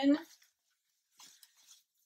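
A woman's voice trailing off at the end of a word, then quiet with a brief faint rustle about a second in, as a knitted piece is picked up and handled.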